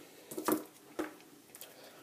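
Two AA batteries being handled and set down on a desk, giving a few light knocks and clicks, the sharpest about a second in.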